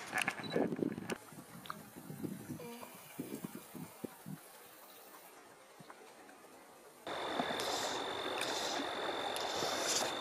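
Small splashes and trickling of shallow creek water as a trout is let go by hand. About seven seconds in, an abrupt cut brings a steady rush of flowing creek water with a thin, steady high tone.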